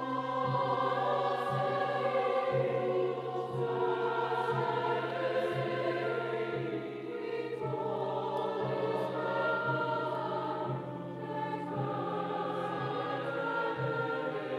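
Mixed choir singing in full harmony with orchestral accompaniment, a low note pulsing about once a second beneath the voices.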